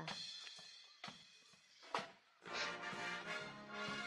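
School marching band playing, faint: quiet at first, then sustained chords over steady drum beats come in about two and a half seconds in.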